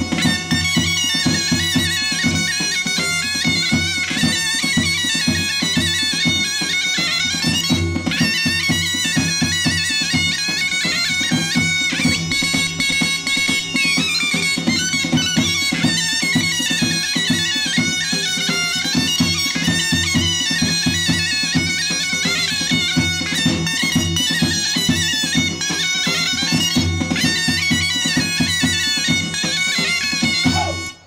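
Bulgarian folk dance music: a fast, ornamented wind melody over a steady held drone, with a drum keeping a regular beat.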